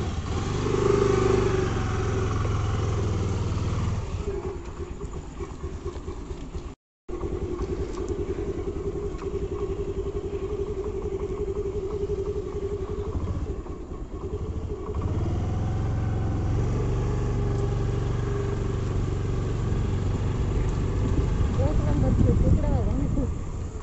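Motorcycle engine running steadily while the bike is ridden, with a short silent break about seven seconds in.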